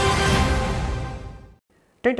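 Closing chord of a TV programme's theme music, held and then fading out about three-quarters of the way through, leaving a brief silence.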